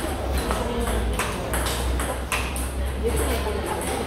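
Table tennis ball being hit with rubber bats and bouncing on the table: a quick, uneven series of sharp clicks, as in a rally.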